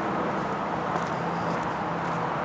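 Steady outdoor background noise with a low, even hum and no distinct events.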